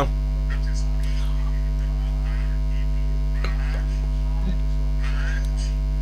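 Steady electrical mains hum, a low even drone with a stack of overtones, and a faint distant voice now and then beneath it.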